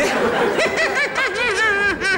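A man giggling in a high falsetto, a coy, drawn-out titter that wavers up and down in pitch, put on to imitate a woman's giggle.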